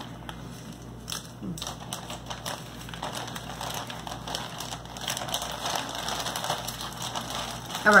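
Snack packaging being handled, with light crinkling and irregular small clicks and ticks.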